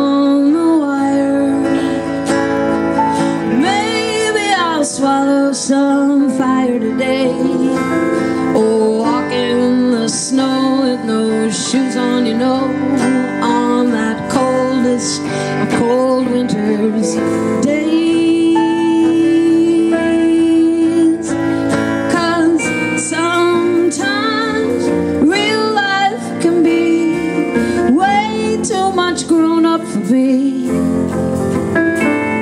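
A live band playing a song: acoustic and electric guitars, electric bass, keyboard and drums, with notes bending and wavering over a steady beat.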